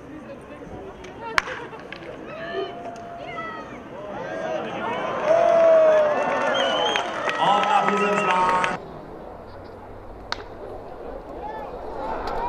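Scattered voices and chatter of spectators and players at a baseball field. They grow louder in the middle and cut off abruptly about nine seconds in. There is a sharp knock about a second in, and a sharp crack near the end as a bat hits a ground ball.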